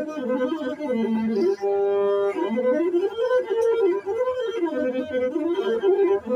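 Masinko, the Ethiopian single-string bowed fiddle, played solo: a winding, ornamented melody, with one note held steady about two seconds in.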